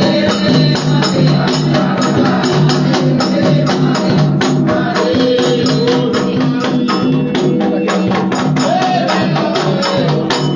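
Candomblé ritual music: a percussion ensemble playing a fast, steady beat of hand drums and shaken rattles, with voices singing over it.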